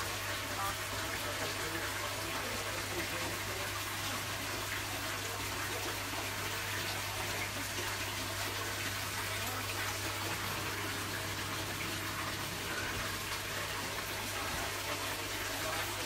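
Water running steadily into a fish tank as it is topped up with fresh cold water, with a low steady hum underneath.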